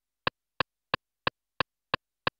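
Akai MPC metronome count-in before recording: a steady row of sharp clicks, about three a second.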